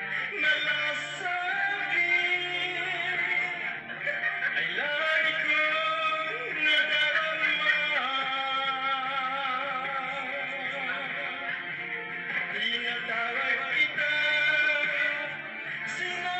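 A man singing a song into a handheld microphone over instrumental accompaniment.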